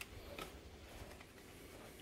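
Quiet room tone with a faint click at the start and another about half a second in.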